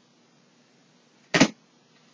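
A single short swish of a tarot card being handled, about a second and a half in, against faint room tone.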